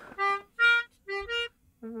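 Melodica playing four short, separate notes, the third one a little lower than the rest.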